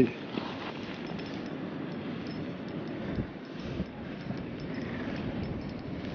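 A spinning reel being cranked to wind a hooked crappie up through the ice hole, under steady wind noise.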